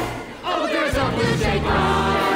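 Musical-theatre ensemble singing together as a choir over band accompaniment. The music drops back briefly under half a second in, then the voices and instruments come back in full.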